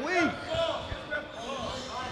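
A basketball bouncing on a wooden gym court, with people's voices in the background.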